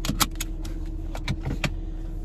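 A handful of short light clicks and rattles, small objects being handled, over the steady low hum of a car cabin.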